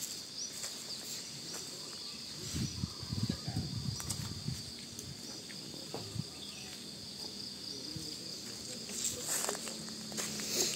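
Insects droning in the trees: a steady, even high-pitched hum, with faint low irregular sounds in the middle, about two and a half to four and a half seconds in.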